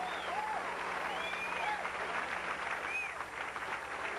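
Bowling-centre audience applauding a shot, a dense spell of clapping with a few high calls over it.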